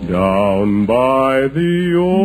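Male barbershop quartet singing in close harmony, in three held, wavering phrases with brief breaths between them about a second in and again half a second later.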